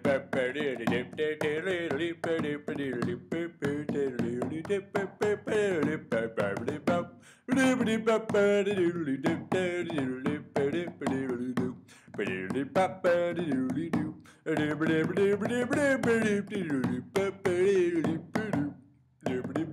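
Background music: a song with a singing voice over quick, sharp percussive clicks.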